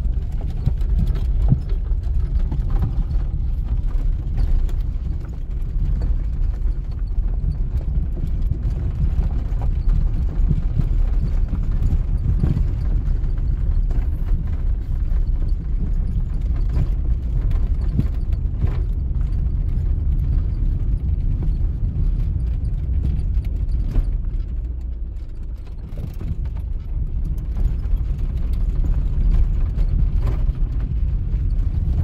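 Inside a Lada Samara's cabin on a rough, broken dirt track: steady low engine and road rumble with a constant scatter of knocks and rattles from the suspension and body jolting over the bumps.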